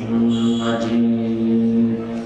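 A man's voice chanting Arabic salawat (blessings on the Prophet Muhammad) in a drawn-out melodic style, holding one long steady note through a microphone.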